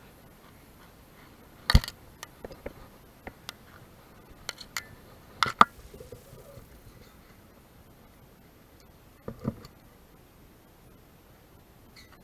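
Sharp knocks and clicks from fishing gear being handled on a concrete seawall: a loud knock about two seconds in, scattered clicks after it, two loud knocks about five and a half seconds in, and a pair more near nine and a half seconds, over a faint steady background.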